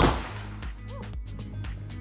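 A single M16 rifle shot right at the start, its report dying away over about half a second, followed by quiet background music.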